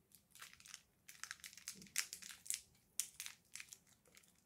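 A Toxic Waste lemon hard sour candy being chewed in the mouth: a string of faint, irregular clicks and crackles.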